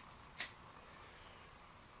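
Quiet room tone with one short, sharp click about half a second in.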